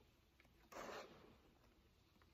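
A page of a large bound book being turned: one short papery swish about two-thirds of a second in, otherwise near silence.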